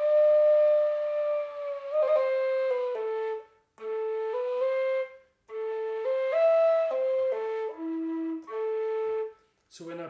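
Romanian caval (kaval), a long end-blown wooden flute, played slowly as a melody of separate breathy notes with short pauses between phrases. It opens on a long note that sinks slowly in pitch and then slides back up, and dips to a low note near the end.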